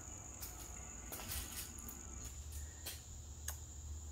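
Quiet room tone: a steady, faint high-pitched whine over a low hum, with a few soft ticks scattered through.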